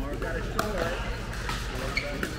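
Pickleball paddles striking the plastic ball in a doubles rally: a couple of short, sharp pops, the clearest near the end, over background voices.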